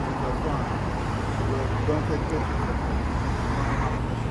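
Street traffic with a steady low engine hum that grows a little about a second in, under faint, indistinct talking in the first half.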